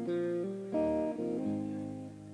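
Electric guitar picking a melodic phrase of single notes and chord tones, with the note changing several times a second.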